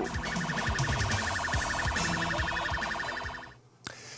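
An electronic alarm tone pulsing rapidly and evenly at a steady pitch, fading out near the end.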